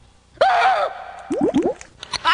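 Cartoon sound effects of a tank of water: a short pitched sound, then three quick rising bloops like bubbles.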